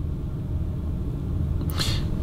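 A steady low rumble inside the Polestar 2's cabin. Near the end comes a short soft hiss as the next word begins.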